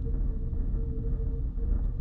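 Steady low background rumble with a faint, even hum: room or recording noise with no distinct event.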